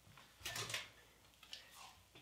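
Faint handling noises as a hot glass flask is picked up with a heat-resistant glove: a soft rustle about half a second in and a couple of light knocks near the end.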